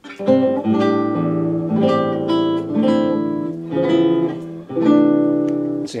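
Acoustic guitar recording played back, plucked chords ringing and changing about once a second. The camera-mic and external-mic tracks are heard together with only the tiniest amount of reverb, the sign that they are nearly in sync.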